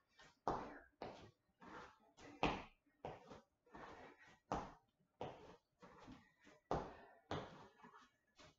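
Feet landing on a hard indoor floor during repeated single-leg hops: a run of short, dull thuds, roughly two a second and slightly uneven.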